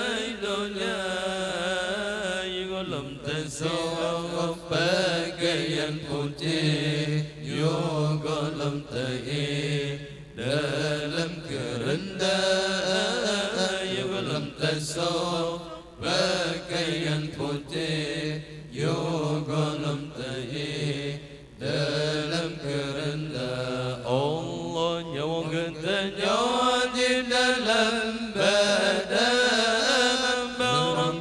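Male Quran recitation in the melodic tilawah style, sung through microphones in long, ornamented, drawn-out phrases with brief breaks for breath between them.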